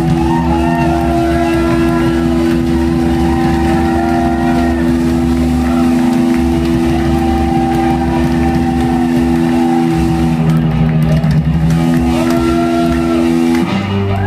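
Live rock band playing loudly: distorted electric guitar and bass holding long, steady droning notes over drums and cymbals. The held notes shift a few times and break off just before the end.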